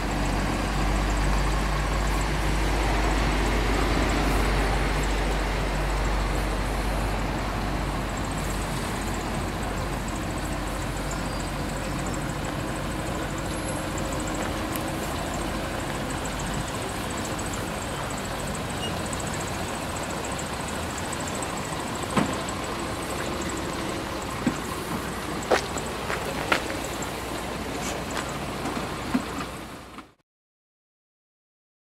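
Renault Clio learner car's engine running at low speed as it creeps through a manoeuvring course, with a low rumble loudest in the first several seconds. A few sharp clicks come in the last several seconds.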